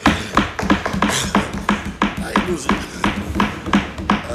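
Members thumping their desks in applause: a quick, uneven run of knocks, about five a second, beginning the moment the speech ends.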